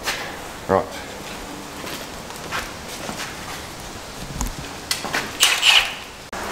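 Hand work on a 4WD's front suspension: a few scattered light metal knocks, then a short burst of clattering and scraping near the end as parts and tools are handled.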